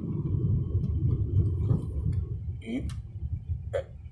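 Car cabin road and engine noise while driving, a low rumble that eases off after about two and a half seconds, with a few faint voice sounds near the end.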